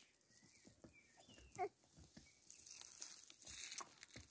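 A small animal's single short, high cry about a second and a half in, then a faint hiss of noise.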